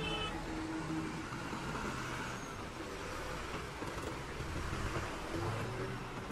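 Heavy diesel truck engines running close by on a highway, a steady low rumble with traffic passing; the rumble swells about five seconds in as a loaded truck pulls past.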